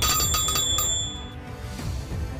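A bright bell chime sound effect comes in suddenly at the start, a quick run of rings that fades out after about a second and a half, laid over steady background music.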